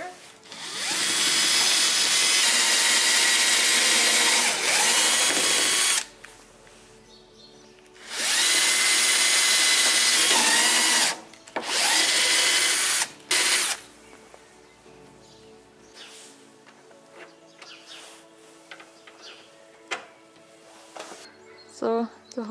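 Power drill boring a hole into the edge of a glider's canopy frame, run in three goes: one about five seconds long, then two shorter runs a couple of seconds apart, the motor's pitch shifting during the runs. After that it is much quieter, with faint background music.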